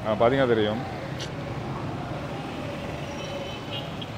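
Steady road traffic noise on a city street, after a brief voice at the start.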